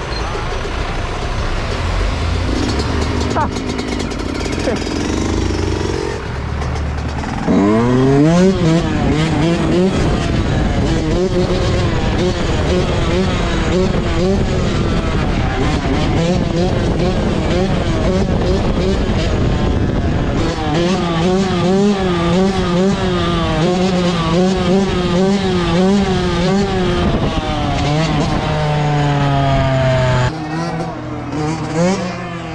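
A Yamaha YZ125 single-cylinder two-stroke dirt bike engine. After a low rumble in the first seconds, it revs up sharply about seven seconds in and is held at high revs with the pitch wavering up and down as the throttle is worked through a wheelie. It dips briefly around twenty seconds and revs up again near the end.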